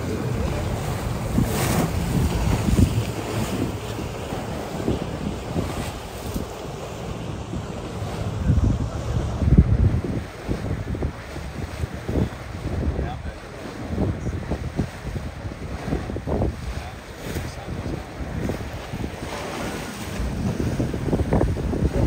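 Wind buffeting the microphone over the rush and splash of water along the hull of a motorboat under way. The rumble is uneven and gusty, with its strongest gust about nine seconds in.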